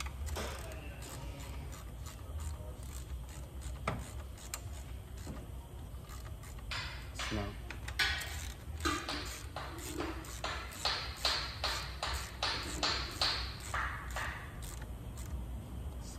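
Metal-on-metal clicking from hand work on a BMW engine's oil filter housing and its bolts: a run of short, sharp clicks that starts about six seconds in and quickens to two or three a second before stopping near the end.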